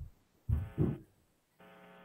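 A pause in a video-call conversation holding two brief, low voice murmurs, heard through the call's narrow audio.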